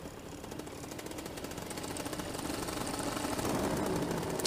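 Paramotor engine running steadily in flight, a fast even buzz of firing pulses that grows gradually louder.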